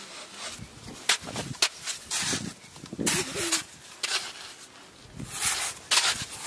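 A steel hoe digging into wet clay mud, with irregular sharp knocks of the blade and scraping, crunching bursts as clods are chopped and turned over.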